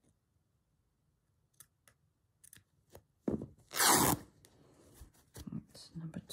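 Calico torn by hand: a few faint clicks, then one loud rip lasting about a second, a little past halfway, and a few small rustles after it.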